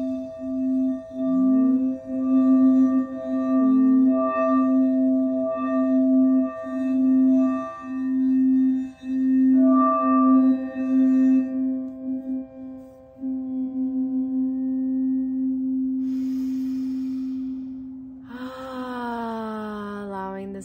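A large singing bowl ringing on: a low steady tone with higher overtones, its level pulsing in slow, regular swells for the first dozen seconds, then holding smoother. About eighteen seconds in a falling, sliding sound joins it.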